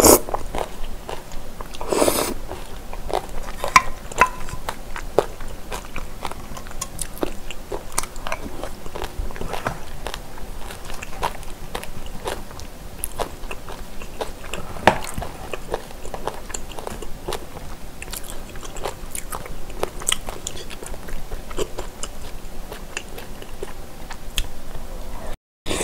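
Close-miked eating of spicy boneless chicken feet and bean sprouts: wet, sticky chewing with many small crunches and mouth clicks. Mouthfuls are slurped in at the start and again about two seconds in.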